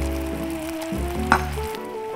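Sugar syrup bubbling and sizzling in a saucepan on the heat, the first stage of making dalgona, under background music with a bass line and melody. A single sharp click comes a little past halfway.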